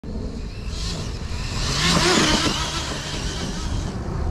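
Arrma Talion 6S RC truggy running at speed across grass, its noise swelling to a peak about two seconds in.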